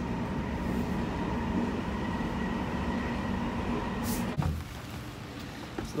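Underground train running, heard from inside the carriage: a steady rumble with a faint level whine. It cuts off suddenly about four and a half seconds in, leaving quieter outdoor background.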